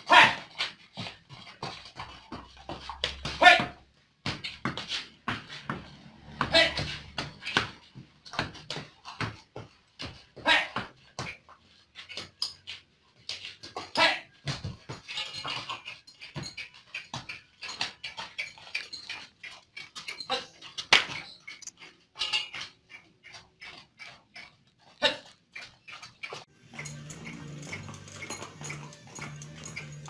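Short, loud animal calls every few seconds over a run of sharp clicks and knocks. Background music with a beat comes in near the end.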